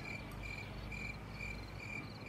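Cricket chirping in a steady rhythm, about two short chirps a second.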